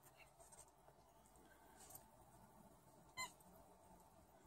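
Near silence, with one brief high-pitched squeak about three seconds in.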